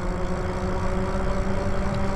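Lyric Graffiti e-bike cruising at a steady speed on fresh, smooth asphalt: an even hum from its electric motor and fat tyres over a low, steady rumble.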